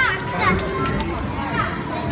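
Children's voices calling and chattering over one another in a busy indoor space, with no clear words.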